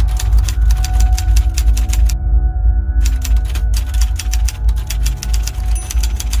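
Typewriter keys typing in quick runs of strokes, about ten a second, with a pause of about a second starting about two seconds in. Under it runs a low, steady music drone.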